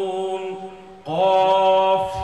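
A man's voice chanting in long, steady held notes, amplified through microphones. The first note trails off during the first second, and a louder new note starts about a second in and is held.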